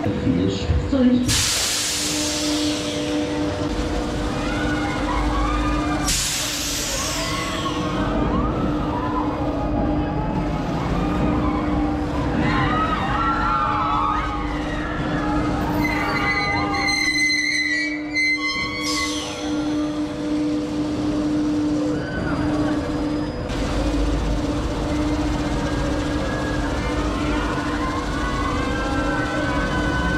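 Huss Top Spin ride running a cycle, with its steady mechanical hum and riders screaming and shouting. Several loud hissing bursts come through, the longest one about 16 to 19 seconds in.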